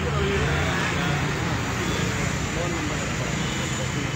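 Steady road-traffic rumble with indistinct voices in the background.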